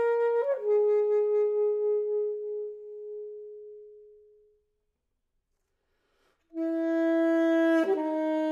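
Alto saxophone holding a note that steps down once and then fades away to nothing over about four seconds. After a silence of about two seconds a new, loud held note begins.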